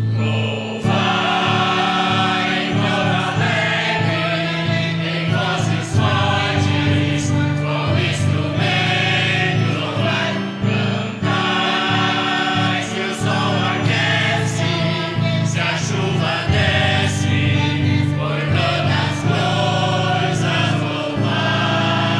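Church choir singing a hymn with instrumental accompaniment: the offertory hymn during the preparation of the gifts at Mass.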